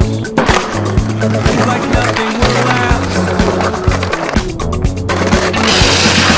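Music with a steady drum beat and bass line, with skateboard board sounds under it.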